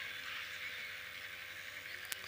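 A pause in amplified speech: a low, steady background hiss with a faint steady hum from the public-address system.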